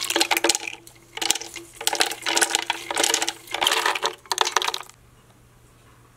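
Roasted peanuts poured into a plastic blender jar, rattling and clattering against the jar in several bursts over about five seconds, then stopping.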